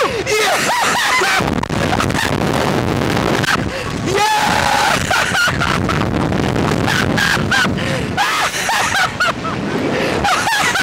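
Steady wind rushing over the onboard microphone of a slingshot ride capsule in flight, with the two riders laughing and shouting over it at several points.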